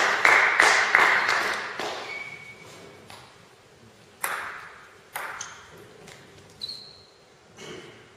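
Spectators' applause dying away over the first few seconds, then a table tennis ball bouncing four times, single sharp ticks about a second apart, some with a brief ring.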